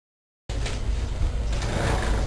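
Dead silence, then about half a second in the sound cuts in suddenly: a steady low rumble with a hiss over it, the background noise picked up by a camcorder's microphone resting on the ground.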